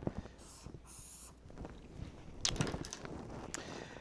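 A pen drawing lines on paper: a few scratchy strokes in the first second or so, then a cluster of short scrapes about two and a half seconds in.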